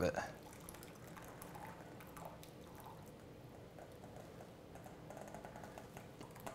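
Faint trickle and dripping of heavy cream poured from a stainless steel bowl through a fine-mesh strainer into a glass measuring cup.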